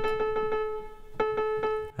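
Electronic keyboard holding a single piano-voice note, the A at 440 Hz, as it is being detuned toward 432 Hz. The note is struck again a little after a second in and stops just before the end, over a quick run of regular clicks.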